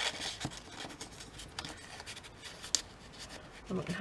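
Paper and thin card being handled and slid into a card pocket: soft rustling and rubbing, with a single sharp click about three seconds in.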